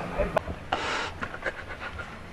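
A woman crying, with a long breathy gasp a little under a second in and shorter sobbing breaths after it.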